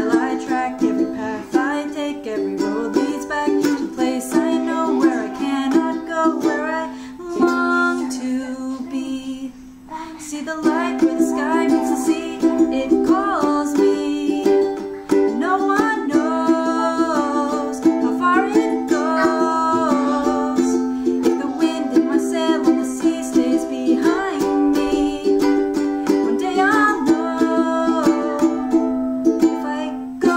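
Ukulele strummed in chords with a woman singing along. There is a brief quieter stretch about a third of the way in.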